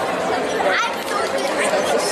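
Crowd chatter in a gymnasium: many voices talking at once, none standing out, at a steady level.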